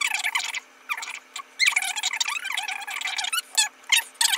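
Eyebrow pencil, a Benefit Precisely My Brow, drawn in quick strokes over the brow hairs: scratchy squeaking in short bursts, with a longer run of strokes in the middle.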